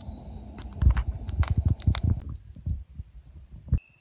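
Footsteps through dry leaf litter on a forest floor, with irregular low thumps and rustles from a hand-held phone being jostled while walking. The sound thins out after about two seconds and stops abruptly just before the end.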